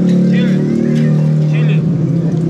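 A steady, low engine hum with even overtones, unchanging throughout, with two brief snatches of speech over it.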